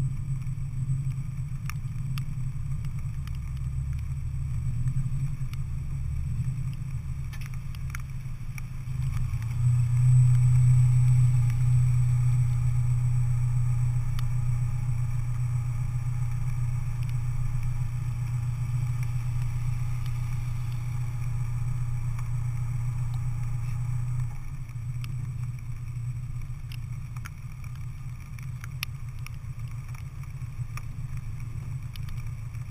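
Car engines idling steadily. The idle grows louder from about ten seconds in and drops back at about twenty-four seconds, while another car pulls up close alongside.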